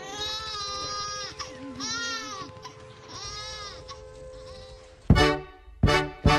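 A newborn baby crying in three long wails over a steady held musical note. About five seconds in, a klezmer band comes in with two sharp, loud chords.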